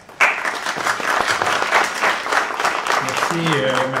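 Audience applauding, starting abruptly just after the start and continuing to the end, with a man's voice beginning over it near the end.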